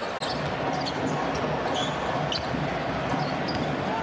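Arena crowd noise during live basketball play, a steady hubbub, with scattered short sneaker squeaks on the hardwood court and the ball bouncing.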